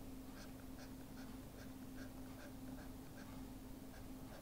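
Faint scratching of a stylus on a pen tablet, short strokes about four or five a second as a small area is shaded in, over a steady low hum.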